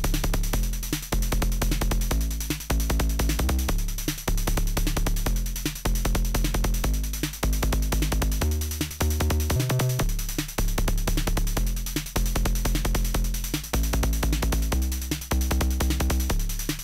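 Make Noise 0-Coast synthesizer patched as a kick drum–bass hybrid. It plays a fast pattern of clicky kick hits whose low pitch steps up and down as a bassline is played from a keyboard.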